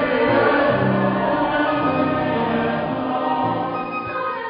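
A church choir singing a hymn in long, sustained chords.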